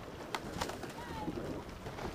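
Wind and rolling noise from a bicycle moving along a gravel towpath, with a few sharp rattling clicks in the first second. A short bird call comes about a second in.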